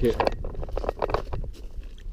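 A man's voice in brief fragments, over a steady low rumble on the microphone with a few light clicks.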